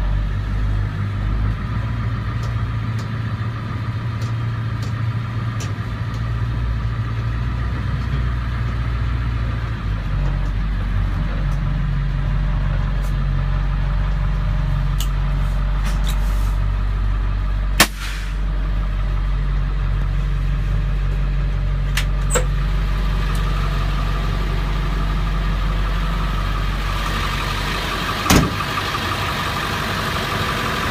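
Refueler truck's engine running as heard from inside the cab, a steady low hum whose pitch steps up a little about ten seconds in. A few short sharp knocks cut through it, the loudest about 18 seconds in and another near the end.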